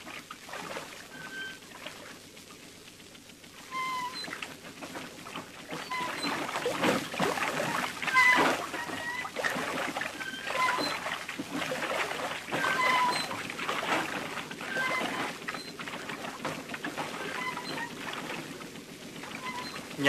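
Wooden treadle chain pump lifting water along its trough: water splashing and pouring in repeated surges, with short high squeaks from the mechanism.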